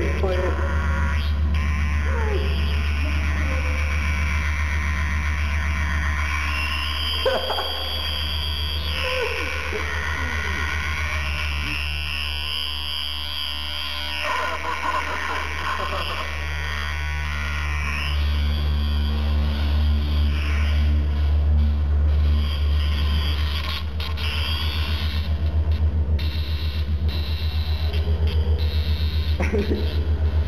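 Circuit-bent electronic noise instrument playing through a subwoofer: a steady deep bass drone with high whistling tones gliding up and down over it. The high tones drop out briefly about halfway through, and the sound turns more pulsing near the end.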